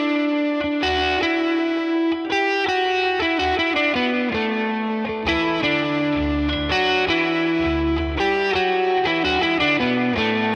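Electric guitar playing a melodic lead line of single notes. About halfway through, a baritone guitar joins in, doubling the same line an octave lower and filling out the low end.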